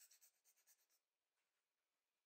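Faint, rapid scratching from a shiba inu puppy at a perforated plastic ball toy, about ten strokes a second, dying away about a second in.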